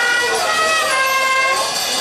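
Brass band of trumpets, trombones, mellophones and sousaphones playing held chords; the brass slides down about half a second in and settles on a new sustained chord about a second in.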